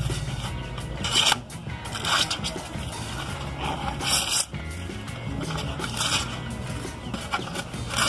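A plastic label being peeled and torn off a PET soda bottle, heard as several short rasping rips over background music.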